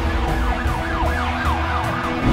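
A siren wailing quickly up and down, about three sweeps a second, over a music bed with a steady low drone.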